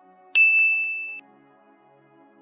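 A single bright ding from a notification-bell sound effect, struck about a third of a second in. It rings on one clear tone for under a second, then cuts off abruptly over faint background music.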